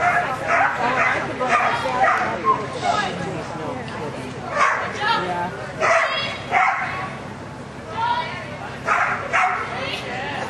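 A dog barking repeatedly, about a dozen short barks at irregular intervals with a couple of brief pauses.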